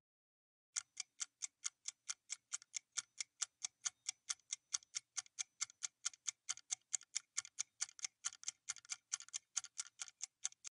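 Quiz countdown-timer sound effect: faint clock-like ticks, evenly spaced at about four a second, starting just under a second in and running on as the answer time runs out.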